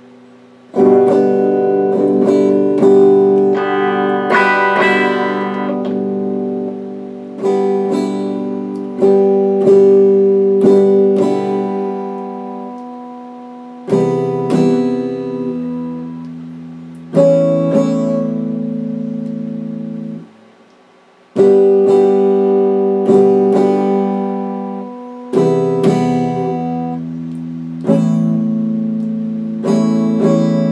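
Electric guitar strummed with the fingers: chords struck one after another, each left to ring and fade, with a short break about twenty seconds in.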